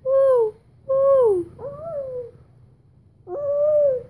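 A woman imitating an owl's hoot, "hou hou": four drawn-out calls, three falling in pitch and a last, flatter one near the end.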